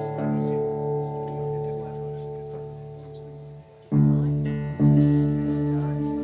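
Guitar chords struck and left to ring out steadily, slowly fading, then two new chords struck about four and five seconds in.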